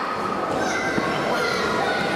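Many children's voices shouting and calling out at once, overlapping and echoing in a large gym hall.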